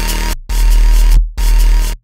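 Dubstep drop playing: long sustained bass notes with a heavy sub bass, broken by short dead-stop gaps. The sub is loudest from about half a second in.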